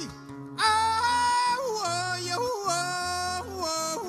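A singer's long sung line with no transcribed words, in the cantadera style of Panamanian décima singing, over guitar accompaniment. The voice holds high notes and slides and steps between them. It comes in about half a second in, after a short dip.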